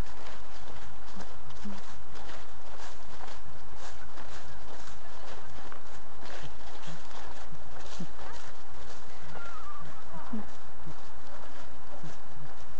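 Steady wind noise on the microphone with irregular rustling, and faint distant voices.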